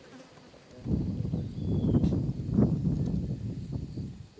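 An insect buzzing loudly, starting about a second in and fading near the end.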